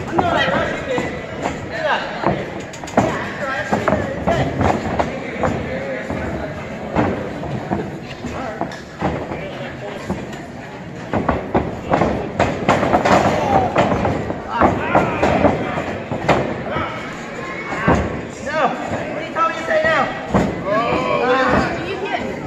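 Shouting voices mixed with repeated thuds and slams of bodies and feet hitting a wrestling ring's canvas.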